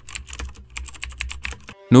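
Computer-keyboard typing sound effect: a rapid, irregular run of key clicks, about ten a second, over a faint low hum. The clicks stop shortly before the end.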